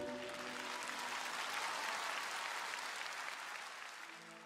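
Audience applauding as the last note of a song dies away, the clapping fading out toward the end.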